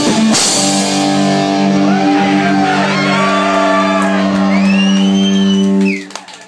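Metal band's final chord on distorted electric guitars and bass, ringing out after a last drum and cymbal hit, then cut off suddenly near the end.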